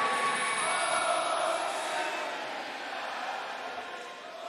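Large arena crowd cheering and shouting, with one voice holding a long call near the start.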